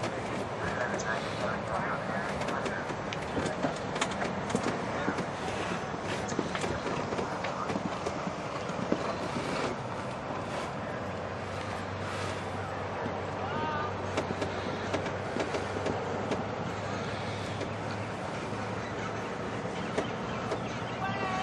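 A horse's hoofbeats on sand arena footing as it canters and jumps a course, over a steady background noise with faint voices.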